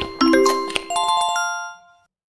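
A short chime-like musical jingle: bell notes struck in turn, ending in a cluster of high ringing notes that fades away near the end.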